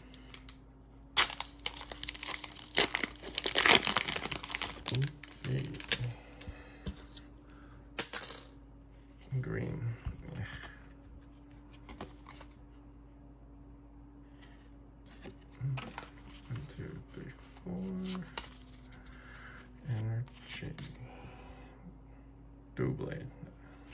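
Foil Pokémon booster pack wrapper being torn open by hand, crinkling loudest in the first few seconds. A single sharp click about eight seconds in, then soft rustling as the cards are handled.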